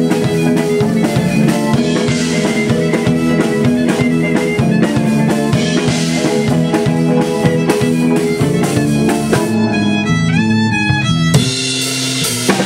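Live band playing an instrumental passage: drum kit, guitar and violin. About ten seconds in, one melody line that bends in pitch stands out over the band.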